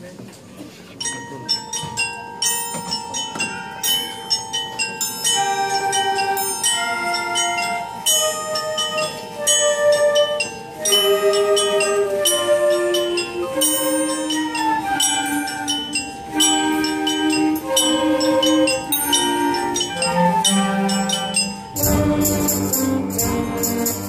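School concert band playing Christmas music, opening with a mallet keyboard picking out a melody of separate ringing notes over a held tone, with evenly repeated jingling strokes from bells or a tambourine. About 22 seconds in, the full band with brass and drums comes in louder.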